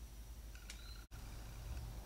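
Quiet room tone with a steady low hum and a faint click or two. The sound drops out for an instant about a second in, where the recording is cut.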